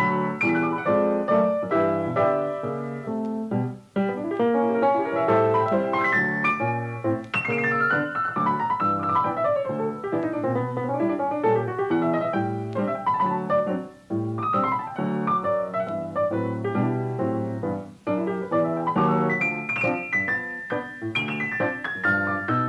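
Background piano music, a stream of struck notes with brief pauses between phrases.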